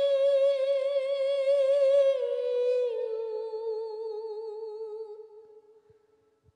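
A single voice, hummed or sung wordlessly, holds a long note with vibrato. It steps down in pitch twice, about two and three seconds in, then fades out near the end.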